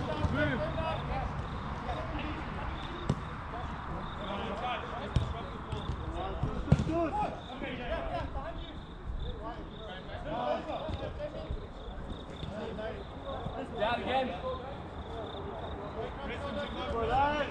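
Players' voices calling across a football pitch, with a few sharp thuds of the ball being kicked. The loudest thud comes about six and a half seconds in.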